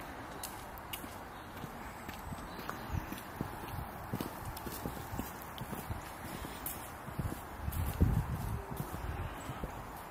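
Footsteps on a stone-paved path at an even walking pace, each step a short low knock over a steady outdoor hiss. A louder low rumble comes about eight seconds in.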